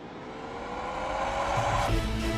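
Film-trailer riser: a swell of noise that grows steadily louder, with a faint tone gliding slowly upward. A low rumble comes in near the end.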